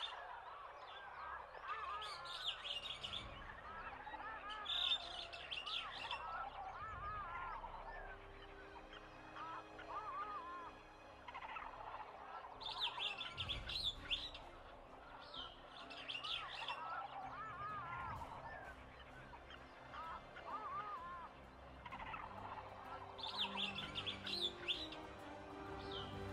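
Recorded bird calls under the credits: high chirps come in clusters every few seconds over a running chatter of lower calls, with a faint steady low tone beneath.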